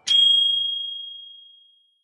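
A single bright bell-like ding, struck just after the start and ringing out on one high tone that fades away over nearly two seconds. It is the chime marking the end of a three-minute timer.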